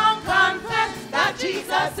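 A group of women singing a gospel praise chorus into microphones.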